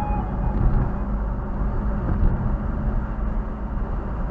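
Car driving at steady speed, heard from inside the cabin: an even rumble of engine and tyre noise.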